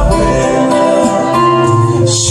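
A live band playing a mellow song, with acoustic guitars and keyboard over a steady bass line; the chord moves on near the end.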